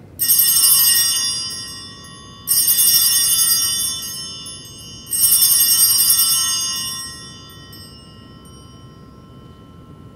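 Altar bells rung three times, at the start, about two and a half seconds in and about five seconds in, each ring a bright cluster of high tones that fades away over about two seconds. They mark the elevation of the chalice at the consecration.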